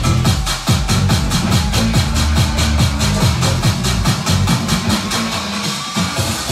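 Vietnamese vinahouse dance remix: a fast, even beat with ticking hi-hats over a heavy, sliding bass line. The bass drops away briefly near the end.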